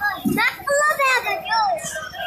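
Children's high-pitched voices shouting and squealing, several sweeping up and down in pitch, from riders on a fairground ride.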